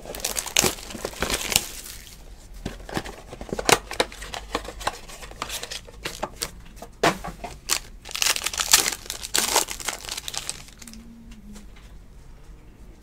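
Panini Crown Royale basketball card box and the plastic wrapper inside being torn open by hand, in a series of crinkling, tearing bursts that are loudest near the end.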